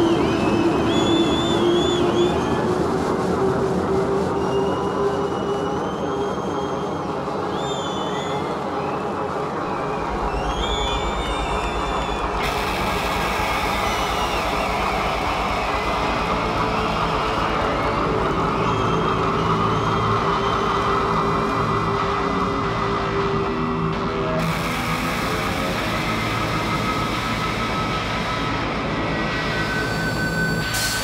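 Droning noise-rock intro from a live band's synths and effects-laden guitar: a sustained drone with wavering, siren-like high glides. A low pulsing beat enters about a third of the way in.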